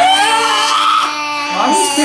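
A man's and a girl's voices making long, drawn-out wailing noises together: one voice holds a steady note while the other rises and bends above it.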